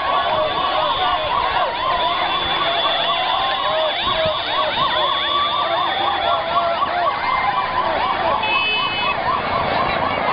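A marching crowd with many women ululating together: a continuous, wavering high trill of many overlapping voices over the noise of the crowd.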